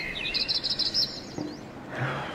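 A bird chirping: a quick run of high, rapid chirps lasting under a second, a recorded sound effect in a radio drama.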